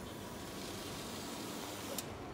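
Steady airy hiss of background noise, with a sharp click at the start and another at the end where the recording is cut.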